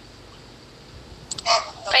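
Low background hiss for over a second, then a rooster starts crowing, a run of short loud calls beginning about a second and a half in.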